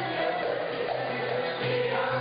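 Turkish classical music choir singing a wavering melody with ensemble accompaniment, over a regular low beat.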